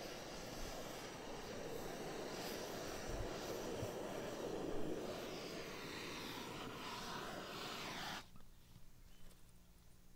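Handheld gas torch burning with a steady rushing hiss as its flame heats an exothermic-weld mold on a copper ground rod. The torch is shut off suddenly about eight seconds in.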